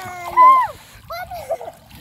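Splashing in shallow water as children move about in it, with a child's high voice calling out in the first second and again briefly a little later.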